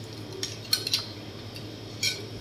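A spoon stirring matcha green tea in a small glass jug, clinking against the glass a few times around the middle, over a low steady hum.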